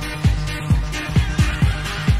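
Electronic dance music from a live club DJ set, with a four-on-the-floor kick drum at about two beats a second under a full mix.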